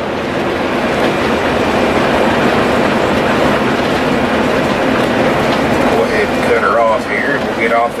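Inside the cab of a 2005 Country Coach Inspire diesel motorhome cruising at highway speed: a steady rumble of tyres, wind and engine, growing slightly louder. A man's voice comes in near the end.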